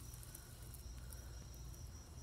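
Crickets trilling faintly and steadily on one high note, over a low steady hum.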